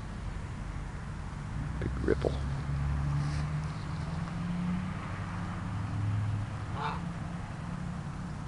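Distant road traffic: a steady low drone in which the engine notes of passing vehicles rise and fade. Two short calls stand out, about two seconds in and again near seven seconds.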